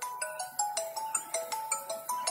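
A mobile phone ringtone playing: a simple electronic tune of short single notes stepping up and down, about five notes a second.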